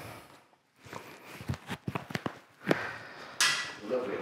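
Light clicks, taps and rustling as a man handles his gear and puts on a disposable dust mask, with a short breathy rustle near the end.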